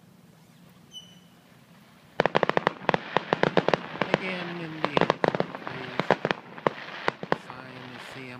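Fireworks bursting in a rapid string of sharp crackles and pops, starting about two seconds in, dense for several seconds and thinning out near the end.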